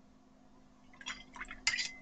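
Watercolour brush working in a white ceramic palette well, starting about a second in: a few small clicks and scrapes, then one sharper clink with a brief ring near the end.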